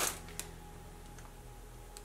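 Quiet room tone: a faint steady hum, with a soft tick about half a second in and a fainter one near the middle.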